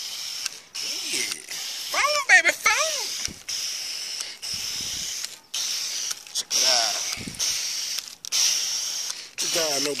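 Garden-hose foam gun spraying car-wash foam onto a truck: a steady hiss that cuts out briefly several times. A man's short exclamations come about two seconds in, around seven seconds, and near the end.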